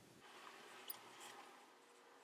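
Faint scratching of a pencil making short strokes on drawing paper, with a small tick about a second in; the strokes stop after about a second and a half.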